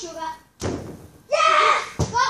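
A single sharp thud of a football being struck, about half a second in, followed by a child's loud exclamation.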